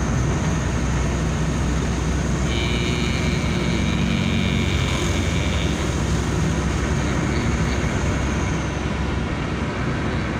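Car running along at road speed, heard from inside the cabin: a steady engine and road rumble with road and wind noise. A thin, high steady tone sounds for about three seconds, starting a few seconds in.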